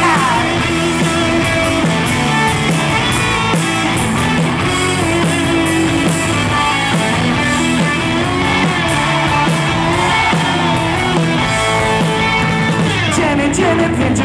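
Live rock band playing loud: distorted electric guitars, bass and drums, with a man singing lead over them.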